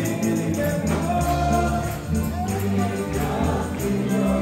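Live congregational worship music: a group of voices singing a Spanish-language hymn together over keyboard, with a steady percussion beat running through it.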